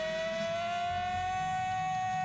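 A male jazz vocalist holds one long high note that slides slowly upward, over the band's accompaniment.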